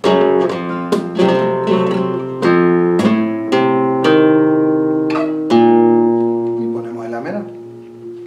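Flamenco guitar playing a fandangos de Huelva falseta in the E (por mi) position: a run of plucked single notes and chords, about one every half second, ending on a chord about five and a half seconds in that rings and fades.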